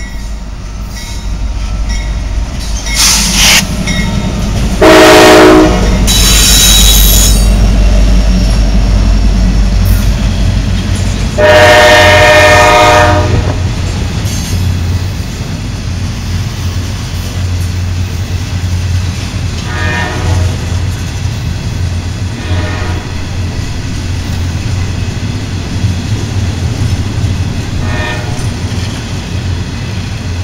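Norfolk Southern freight train passing close by. The diesel locomotive's horn sounds a short blast about five seconds in and a longer blast of about two seconds near twelve seconds. Under it runs a steady low rumble of the engines and loaded flatcars rolling along the rails.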